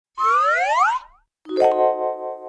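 Cartoon-style comedy sound effects: a loud pitched glide that sweeps steeply upward for under a second, then a sharply struck pitched note that rings on and fades.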